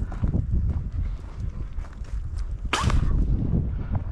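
Footsteps on a dirt track and wind buffeting the microphone of a body-worn camera, with a single sharp swish about three quarters of the way through.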